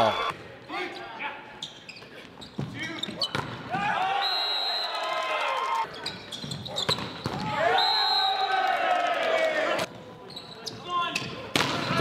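Indoor volleyball rally: sharp thuds of the ball being hit and sneakers on the hardwood court, with players' voices calling out in two longer stretches partway through.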